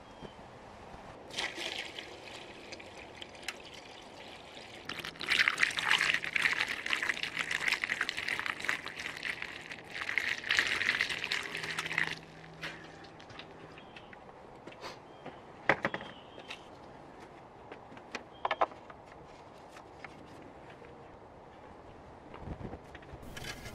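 Kerosene poured from a jug through a plastic funnel into an engine's oil filler as a flush, a steady pouring stream that grows louder in its second half and stops about twelve seconds in. A few light clicks and knocks follow.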